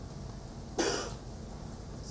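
A single short cough from a person, about a second in.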